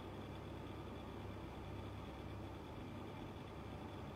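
Faint steady background hiss with a low hum and no distinct sound events: room tone.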